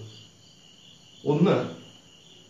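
A faint, steady high-pitched tone runs under a pause in a man's talk, broken by one short spoken syllable a little over a second in.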